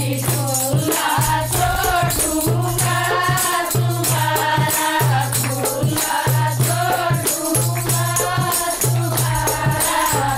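A group of women singing a Haryanvi folk song in unison, backed by rhythmic jingling, rattling percussion.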